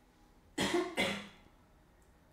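A person coughing twice in quick succession, about half a second apart.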